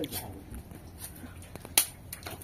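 A single sharp click about three-quarters of the way through, with a few fainter ticks, over quiet room sound and a faint low hum.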